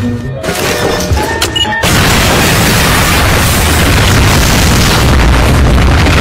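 A cartoon explosion sound effect: a sudden loud boom about two seconds in that goes on as a long, dense rumble for several seconds, over music.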